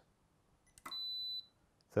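A click, then a single short high beep of about half a second from the MEET MP-MFT20 multifunction tester during its automatic 30 mA RCD test sequence.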